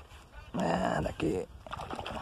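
A man's voice: a loud wordless exclamation lasting about a second, starting about half a second in, followed by a shorter, quieter vocal sound.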